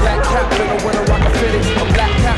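Music with a steady beat and a loud bass line, over a skateboard rolling on concrete and clacking against a flat metal rail and the ground, with sharp hits about one second in and again near the end.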